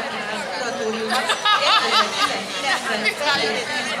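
Crowd chatter: many people talking at once, overlapping voices with no single speaker standing out.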